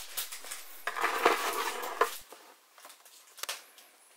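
Rustling and light clicking of merchandise being handled: a fabric lanyard and a cardboard toy box picked up and turned over. It is loudest for about a second from one second in, then thins to scattered small ticks.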